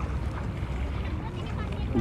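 Steady low rumble of wind buffeting the microphone outdoors, with faint chatter of people on the beach in the background.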